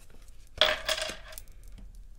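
A thin metal sign plate, numbered 3, set down on a tabletop: one sharp metallic clatter about half a second in, ringing briefly before it fades.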